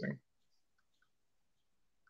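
The tail of a spoken word, then near silence of a call line with a few faint, very short clicks.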